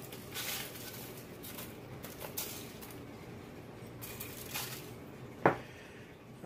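Kosher sea salt being sprinkled over sliced zucchini and broccoli on a foil-lined baking sheet, heard as about four short hissing sprinkles of crystals on the vegetables and foil, then a sharp click near the end.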